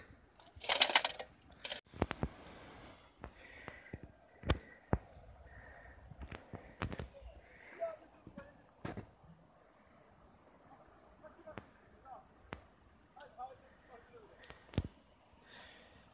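A metal snow shovel scrapes into icy, frozen snow about half a second in. Scattered sharp crunches and knocks in the snow follow.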